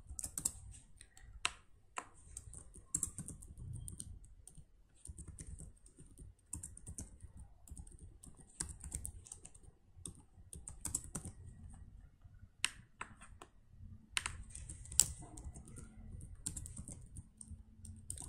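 Typing on a computer keyboard: irregular runs of key clicks with short pauses, and a few sharper, louder keystrokes.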